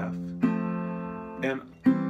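Chords strummed on a metal-bodied resonator guitar. One sounds at the start, a fresh chord about half a second in rings for about a second, and another strum comes just before the end. This is part of a plain C-to-F chord change with the bass jumping from C up to F.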